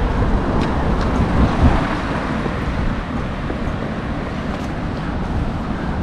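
Street ambience with steady road-traffic noise.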